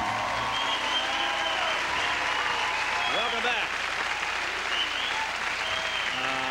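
Studio audience applauding and cheering, with whoops and shouts over the clapping. The band's last held chord dies away in the first second.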